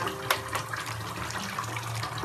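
Water in a bathtub, where a bath bomb has broken up, running and splashing steadily as a hand moves through it, with one sharp click about a third of a second in.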